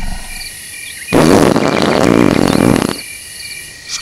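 A loud, rough animal growl lasting about two seconds, starting about a second in, given as the voice of the razorback hog idol, over steady cricket chirping.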